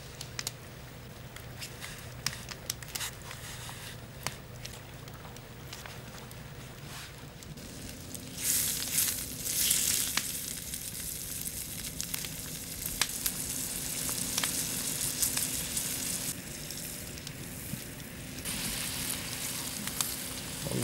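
Ptarmigan meat frying in a pan over an open wood fire, the fat sizzling from about eight seconds in, loudest just after it starts. Before that, only faint scattered clicks.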